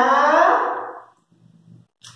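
A woman's voice drawing out a long vowel while sounding out a syllable, fading out about a second in; after it only faint low knocks remain.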